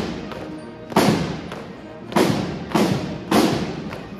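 Marching side drums of a military drum corps striking together in a slow, steady beat: about one heavy stroke a second, each ringing out before the next.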